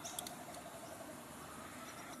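Quiet outdoor background with a faint, evenly pulsing insect drone. A couple of light clicks come just after the start.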